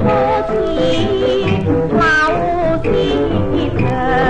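Cantonese song from a 1954 record: a woman's high singing voice sliding and wavering over instrumental accompaniment, with a rising glide about two seconds in.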